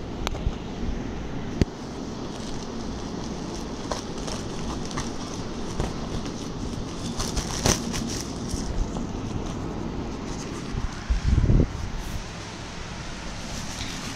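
Plastic mailer bag crinkling and crackling as it is handled and opened, with many small sharp crackles over a steady rustle and a louder low thump about eleven seconds in.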